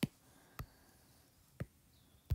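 Three short, sharp taps of a stylus tip on an iPad's glass screen, one at the start, one about half a second in and one about a second and a half in, with near silence between.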